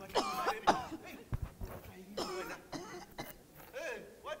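People's voices in short, strained cries and cough-like outbursts, broken up with pauses, with a few short knocks among them.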